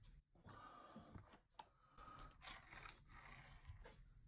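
Near silence, with faint rustling of a microfiber cloth being slid and folded across a cutting mat, in two short stretches.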